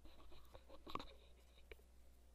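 Near silence: room tone with a steady low hum and a few faint clicks.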